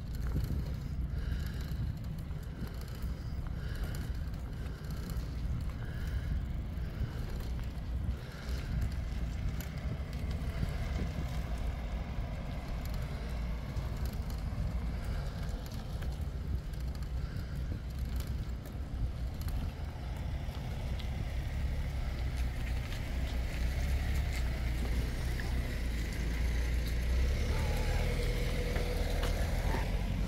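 Steady low wind rumble on the microphone from riding a bicycle, with light tyre and road noise. A faint thin whine comes in near the end.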